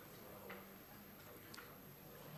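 Near silence: room tone with two faint sharp clicks about a second apart.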